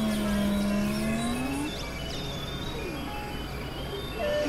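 Experimental synthesizer music. A low tone dips and then rises in pitch over about two seconds, above a steady lower drone, with scattered short gliding chirps higher up.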